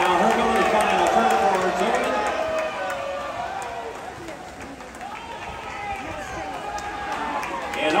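Spectators shouting and cheering during a swimming race, many voices overlapping; the noise dips in the middle and builds again near the end.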